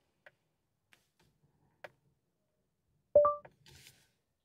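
Near silence with a faint click, then about three seconds in a short two-note rising chime, the second note higher than the first. It is the Google Assistant listening tone, sounding after the steering-wheel voice button is long-pressed, as the assistant waits for a command.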